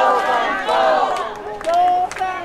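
Crowd of supporters shouting and calling out at close range, several voices overlapping, with one drawn-out call held near the end.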